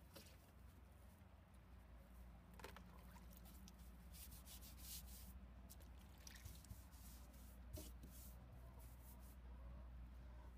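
Faint scrubbing brush on wood and the brush dipped and stirred in a bucket of water, heard as a few short scratchy and watery sounds over a low hum.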